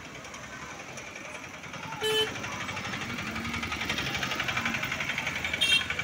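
Traffic passing close by: a vehicle engine runs with a fast, even pulsing. Two short horn honks come about two seconds in and again near the end.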